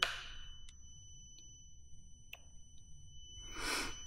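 Near-quiet room with a faint steady high-pitched electronic whine and a few small ticks; a person exhales briefly near the end.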